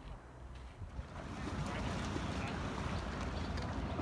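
Outdoor lakeshore ambience: a steady rush with a low rumble from wind on the microphone, growing louder about a second in.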